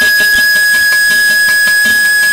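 Carnatic bamboo flute (venu) holding one long, steady high note, with soft mridangam strokes underneath.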